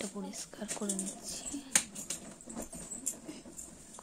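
Short swishes of a soft grass broom sweeping the floor, with one sharp click, the loudest sound, a little under two seconds in. A person's voice is heard briefly in the first second.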